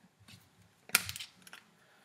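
A small glass iodine bottle picked up from a wooden table: one sharp click about a second in, then a few faint ticks of handling.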